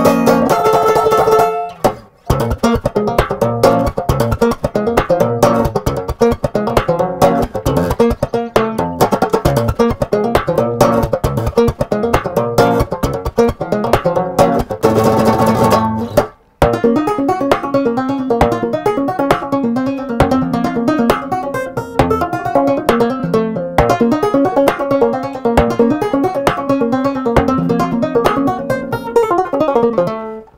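A six-string guitar-banjo played fingerstyle: a steady, rhythmic run of sharp plucked notes that breaks off into brief pauses twice, about two seconds in and about sixteen seconds in.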